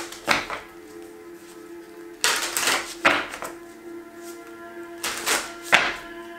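A tarot deck shuffled by hand: short rustling flutters of cards, the longest about two seconds in and again about five seconds in, over soft background music.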